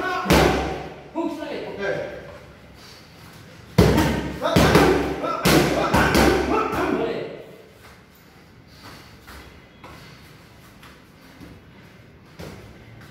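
Boxing gloves striking focus mitts: sharp slaps in quick combinations of several punches, two bursts in the first seven seconds, the loudest about four and five and a half seconds in, with voices between them.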